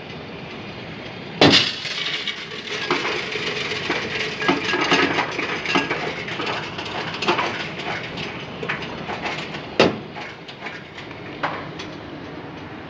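Coins tipped into a coin-counting kiosk and rattling and clinking through its sorter. There is a loud clatter about one and a half seconds in, then several seconds of continuous jangling, and another sharp clink near the end.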